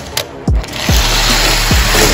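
Background music with deep bass kicks that drop in pitch, about one a second. About half a second in, a steady whirring rush comes in, the sound of die-cast toy cars racing along the track.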